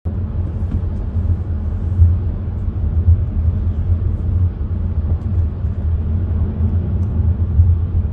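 Steady low rumble of a car driving on a motorway, heard inside the car's cabin: road, tyre and engine noise.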